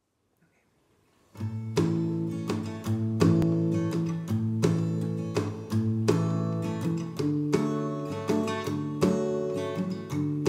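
Martin 000-17S 12-fret acoustic guitar playing chords in a steady rhythm, starting about a second in.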